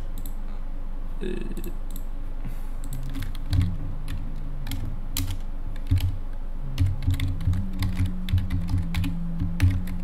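Computer keyboard typing: a quick run of keystrokes starting about three and a half seconds in and going on to the end.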